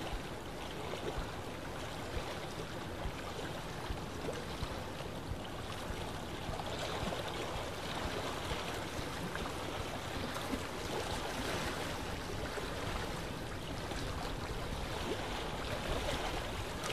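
A river flowing steadily: an even, unbroken rush of running water.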